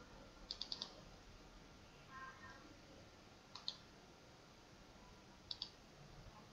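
Computer mouse button clicking: a quick run of four clicks about half a second in, then two double-clicks a couple of seconds apart, faint over a low hiss. A brief faint tone sounds about two seconds in.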